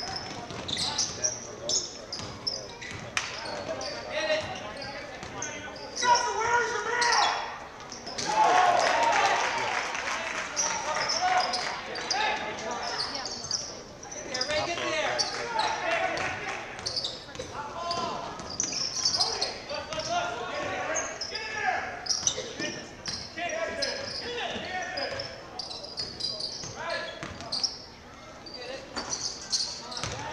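A basketball being dribbled and bounced on a hardwood gym floor during live play, mixed with the voices of players and spectators. The voices are loudest from about six to thirteen seconds in.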